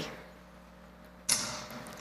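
Low, steady room tone, then about a second in a sudden short rush of noise that fades away over half a second.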